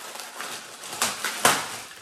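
Clear plastic packaging crinkling as it is pulled and worked open by hand, with two sharper, louder crackles about a second in and half a second later.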